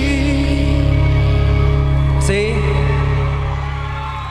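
A male singer holding a long note with vibrato over a backing track with a heavy bass line, then a short rising phrase about two seconds in, the music fading out near the end.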